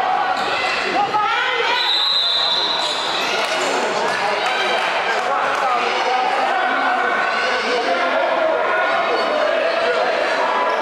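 A basketball is dribbled on a hardwood gym floor amid continual overlapping shouting from players and spectators, which echoes in the gym. There is a brief high squeak about two seconds in.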